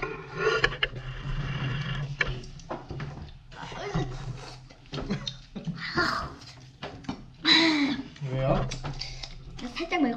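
Young children's voices making short exclamations and mouth sounds while eating, over a low steady hum.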